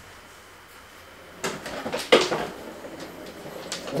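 A manual wheelchair being moved about in a small room: a few clattering knocks and rattles, the loudest about two seconds in.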